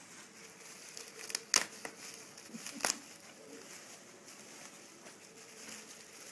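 Bubble wrap and packing wrap rustling and crinkling as an item is unwrapped by hand, with a few sharp crackles, the loudest about a second and a half in and again near three seconds in.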